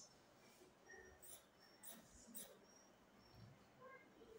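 Faint snips of scissors cutting through fabric, a few spaced cuts in near silence.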